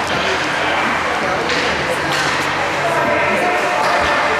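Overlapping spectator chatter and calls in an indoor ice rink, with no clear words, and a few sharp clacks from the play on the ice.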